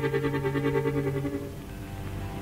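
Chamamé music: a held accordion chord with a fast wavering tremolo, dying away in the last half second as the piece ends.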